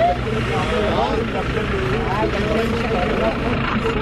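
Several people talking over one another in an open-air crowd, the voices too mixed to make out words, over a steady low engine rumble.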